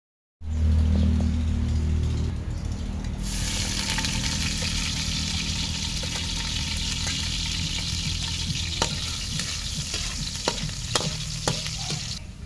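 Minced garlic sizzling in hot oil in a steel wok: the sizzle starts suddenly about three seconds in and holds steady, with a few light clinks of a metal spoon or ladle against the wok near the end. A low hum opens the first two seconds.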